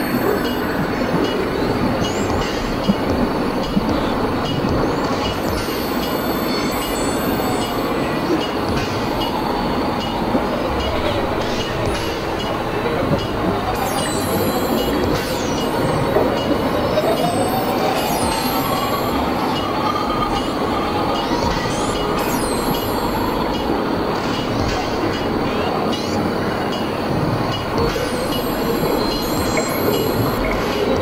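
Experimental electronic noise drone from synthesizers: a steady, dense wash of grinding noise, with a faint wavering tone gliding up and down through the middle.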